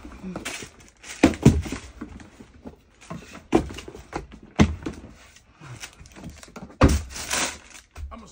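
Sneakers and cardboard shoe boxes being handled and set down: a series of knocks and thuds with soft rustling between them. The longest, loudest stretch comes near the end.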